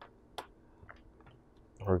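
Small plastic clicks and taps of an oscilloscope probe being handled on a circuit board: two sharp clicks in the first half second, then a few faint ticks, before a man's voice begins near the end.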